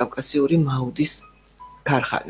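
A person talking, with a short pause about a second in during which a few faint, brief, chime-like tones sound.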